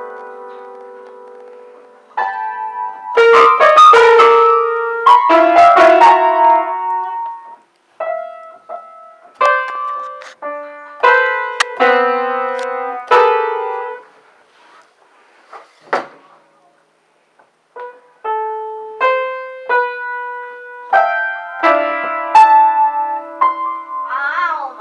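Upright piano keys struck at random by a toddler: irregular clusters of notes and mashed chords that ring and decay, with a quiet stretch of a few seconds past the middle before the pounding resumes.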